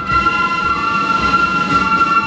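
Flute band playing: the flutes hold one long, steady chord over a regular drum beat.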